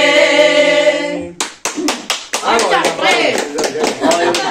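A group of women singing together, holding a last chord that breaks off about a second in. It is followed by clapping and lively talk.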